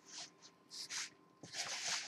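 Hands squeezing and folding crumbly shortening pie dough in a plastic mixing bowl: a few short, soft squishing, rustling sounds.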